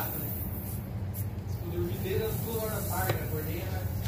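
Light rasping of a T-handle tyre-repair reamer being worked into a puncture in a car tyre, over a steady low hum and faint background voices.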